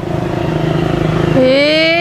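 A small engine running steadily in the background, a low even hum. About one and a half seconds in, a man's voice rises in a drawn-out 'heee'.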